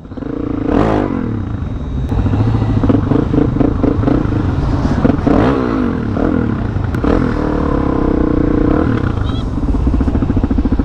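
Suzuki DR-Z400SM single-cylinder motorcycle engine running in slow traffic. It is revved up and down about a second in and again around five and a half seconds in.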